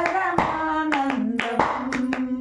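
Devotional bhajan singing with hand claps keeping time: one sung line held and stepping between notes while sharp claps fall at a steady beat.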